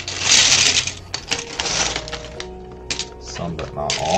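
BlueBrixx plastic bricks pouring out of a crinkling plastic bag into a plastic tray, loudest in the first second, then scattered clicks as the pieces settle and are pushed around by hand. Background music plays underneath.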